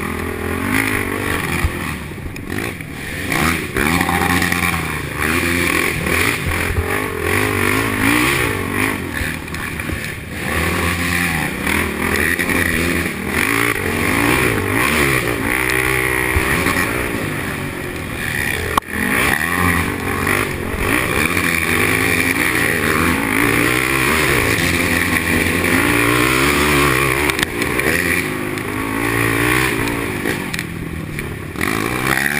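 A 450-class race quad's single-cylinder four-stroke engine, heard from on board, revving up and down continually as the rider works the throttle through a wooded trail, with rushing wind noise. A single sharp knock comes about two-thirds of the way through.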